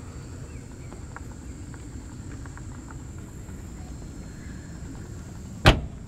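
The trunk lid of a 1965 Ford Mustang convertible slammed shut: one sharp, loud thump near the end, after several seconds of faint low background noise.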